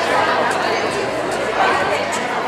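Audience chatter: many voices talking at once, overlapping into a steady babble with no single voice standing out.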